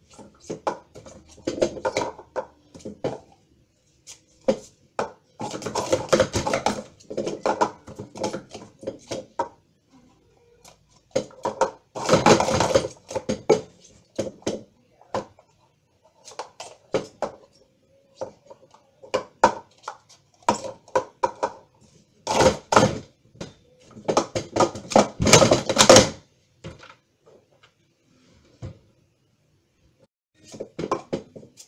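Plastic sport stacking cups being rapidly stacked and unstacked on a table: quick clattering clicks and knocks as the cups slide together and tap down, coming in several fast bursts separated by short pauses.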